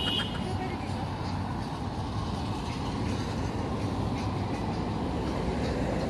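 Steady outdoor road-traffic noise: cars running along a nearby multi-lane road, with a faint low engine hum coming and going.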